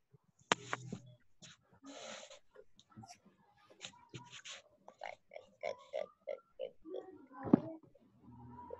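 A person's muffled laughter in short repeated bursts, heard through a video-call connection, with scattered clicks and a sharp knock near the end.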